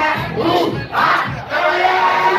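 Live gengetone performance: rappers shouting a chant into microphones and the crowd shouting along, loudest about a second in, over the thumping beat.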